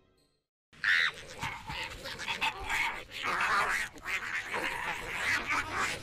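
Harsh animal-like calls start suddenly after a brief silence, just under a second in, and go on thick and continuous.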